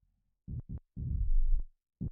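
Deep electronic sounds played from a MIDI keyboard controller: two short low thuds in quick succession about half a second in, then a longer, louder low bass note lasting about half a second.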